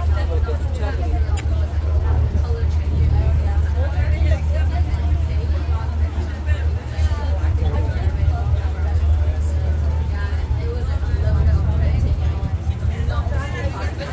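Many passengers chattering on a ferry deck over the ferry's steady low engine rumble.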